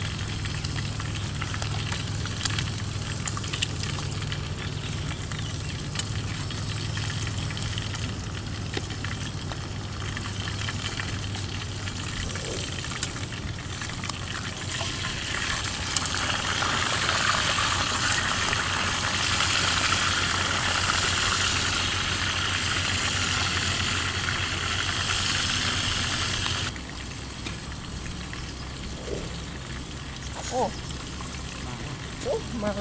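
Food frying in a pot on a portable gas camp stove. A steady sizzle over a low, even hum swells louder about halfway through as the food is turned with tongs, with a few light clicks of the tongs against the pot. It cuts off abruptly near the end.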